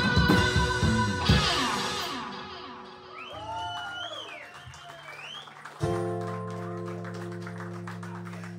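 A live rock band's closing chord rings out and fades over the first few seconds, followed by a few whoops from the audience. About six seconds in, a steady amplifier hum starts suddenly and holds without decaying.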